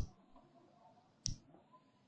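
Two short, sharp clicks about a second and a quarter apart, the first right at the start, over faint background noise.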